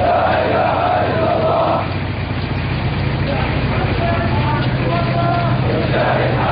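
A large crowd of men chanting and shouting together, a loud massed chorus in the first two seconds, then thinner, scattered voices. A steady low hum runs underneath.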